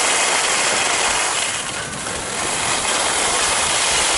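Telemark skis sliding and carving over groomed snow at speed, a steady scraping rush mixed with wind on the camera microphone, easing briefly about halfway through.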